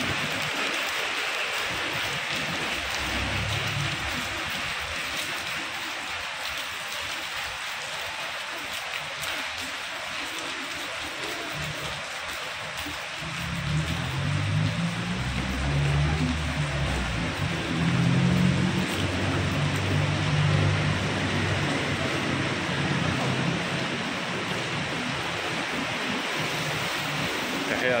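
Steady hiss of rain falling on pavement and the wet road. From about halfway through, a louder, low pitched sound with changing notes joins the rain.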